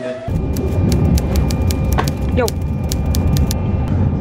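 Passenger train under way, its low rumble heard inside the carriage. A quick run of light ticks, about five a second, sits over it.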